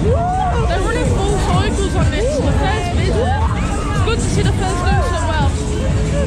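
Several riders screaming and yelling on a fast fairground thrill ride, with loud ride music underneath. The voices rise and fall in long overlapping shrieks.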